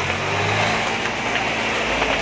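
Tractor's diesel engine running with a steady low hum as it pulls its burning load, over a broad, even hiss.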